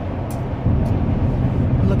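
Road and engine noise inside a Chevy Avalanche's cabin while driving: a steady low rumble that gets louder a little over half a second in.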